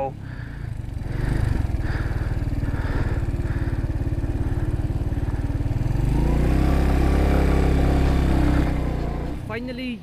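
BMW G310GS single-cylinder motorcycle engine running steadily as the bike rides over a rocky dirt track. It gets a little louder about six seconds in and eases off shortly before the end.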